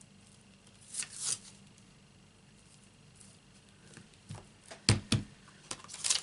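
Hands handling a red rubber cling stamp and clear acrylic stamp blocks while mounting the stamp: a soft rustle about a second in, then a few light taps and two sharp clacks near the end.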